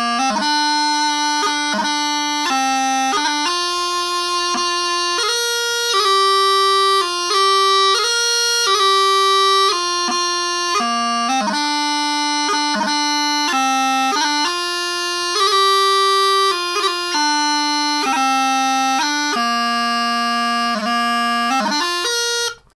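Gibson long practice chanter of cocobolo wood, blown through its reed and playing a pipe tune: one unbroken melody line stepping between notes, with quick grace notes between them.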